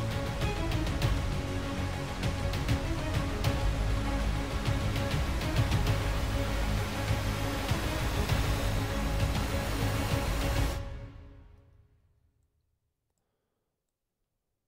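Playback of a work-in-progress epic hybrid trailer music section, with a heavy low end and dense percussive hits under sustained layers. It stops about eleven seconds in and its tail dies away within a second or two.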